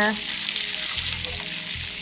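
Hot brown butter sizzling in a stainless steel fry pan around freshly added linguine still wet with pasta water, a steady hiss.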